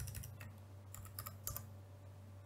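Keystrokes on a computer keyboard: a short burst of about half a dozen faint key clicks in quick succession, typing a word into a code editor, over a low steady hum.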